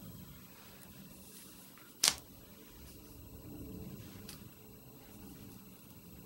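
A playing card set down on a tabletop: one short sharp tap about two seconds in, over quiet room tone.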